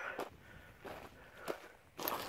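Boots stepping on loose crushed quarry stone: a few separate crunching footfalls, the sharpest about one and a half seconds in.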